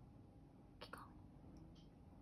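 Near silence: room tone, with one faint, brief whisper just under a second in.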